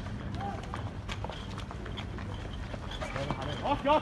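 A group of people running in the street, with scattered short sharp knocks or pops over a steady low rumble. Men shout loudly near the end.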